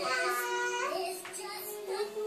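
A toddler who cannot yet talk singing wordlessly, holding long notes that step up in pitch about a second in and then drop back.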